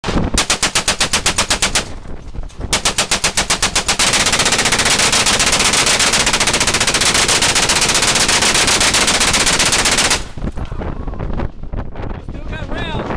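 Browning M1919 belt-fed, air-cooled machine gun firing in full-auto bursts, about ten shots a second. There are two short bursts of a second or so, then one long burst of about six seconds that stops about ten seconds in.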